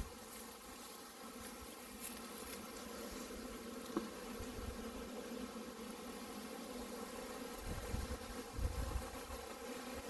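A large honey bee swarm buzzing steadily: a dense, even hum of thousands of bees clustered on a branch and a hive box. A few low bumps come near the end.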